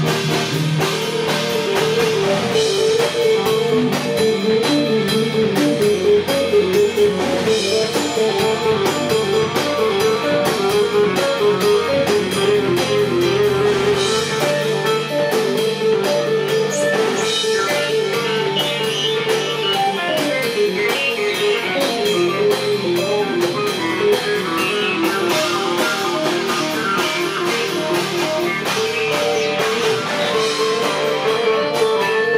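Live rock band playing loudly: electric guitars over a drum kit, with a repeating guitar line.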